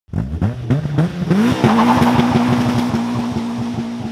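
Caterham Seven 360R's 2.0-litre Ford Duratec four-cylinder revved in quick rising blips through its side exhaust, then holding a steady high note as the car launches away with wheelspin and tyre squeal, fading slightly as it pulls away.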